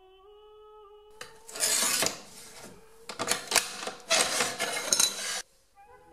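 A manual tile cutter's scoring wheel grating across a tile in several rough scraping strokes, the loudest about a second and a half in, with a couple of sharp clicks. A faint held sung note plays before the cutting starts.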